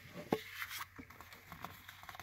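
A stack of cardstock scratch-off lottery tickets handled by hand on a wooden table: one sharp tap about a third of a second in, then a few faint ticks and light rustling of the ticket edges.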